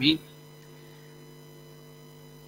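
A voice breaks off just after the start, leaving a faint, steady electrical hum made of a few even tones.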